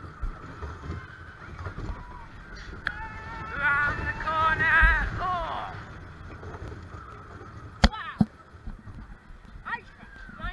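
Amusement-park ride running, with a steady low rumble of the ride and wind on the microphone; a rider's long, wavering scream rises over it from about three to five and a half seconds in. Two sharp clacks come about eight seconds in.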